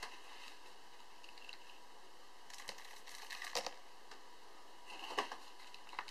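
Faint, scattered small clicks and rustles from bait and a bait scoop being handled while bait is added into a PVA bag loader, in a few short clusters around the middle and near the end.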